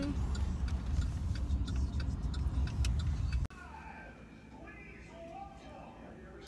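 Steady low rumble of road noise inside a moving car's cabin, with scattered light ticks, cutting off abruptly about three and a half seconds in; after it a much quieter room hum with faint voices.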